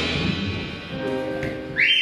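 A live band's closing chord ringing and fading away, then near the end a loud, piercing whistle from the audience as the song finishes.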